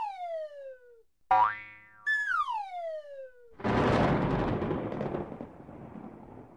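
Cartoon sound effects: a falling whistle-like glide, a quick rising glide, a second falling glide, then a loud burst of noise about three and a half seconds in that slowly fades away.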